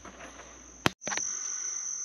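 Quiet room tone, cut by a single sharp click just before halfway. Then a steady, high-pitched insect chorus starts outdoors and carries on.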